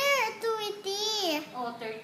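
A young child's voice counting in a sing-song chant: several drawn-out syllables with the pitch rising and falling.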